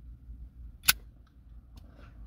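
A single sharp click about a second in, with a fainter one near the end, over a low steady hum.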